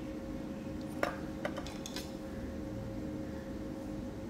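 Light clicks and taps of small craft tools, a metal palette knife and a paintbrush, being handled on the work table: one sharp click about a second in, then a quick run of small taps, over a steady low hum.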